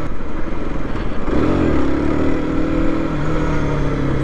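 Aprilia RS 125's single-cylinder four-stroke engine running while the bike is ridden at low city speed. About a second in, the engine note rises briefly, then holds steady.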